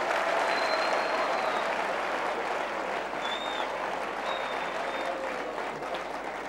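Large studio audience applauding steadily, the clapping loudest at the start and easing slightly over the following seconds.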